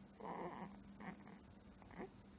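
Sleeping infant whimpering: one fussy cry of about half a second, then two shorter whimpers near the middle and the end. A faint steady hum runs underneath.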